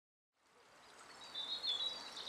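Quiet outdoor natural ambience fading in from silence, with a faint, thin, high bird call held for about the last second.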